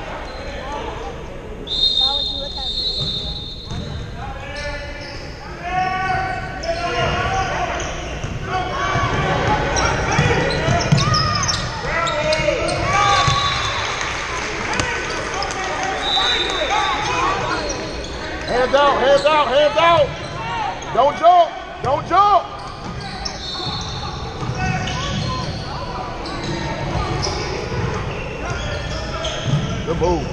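Basketball game on a hardwood gym floor: a ball dribbling, sneakers squeaking, with a cluster of squeaks about two-thirds of the way through, and players and onlookers calling out, all echoing in the large hall.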